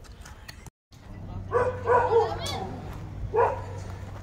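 A dog barking among children's shouting voices, starting after a brief silence about a second in.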